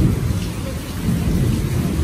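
Thunder rumbling during a heavy rainstorm: a deep, low rumble, loudest at the very start, then rolling on unevenly.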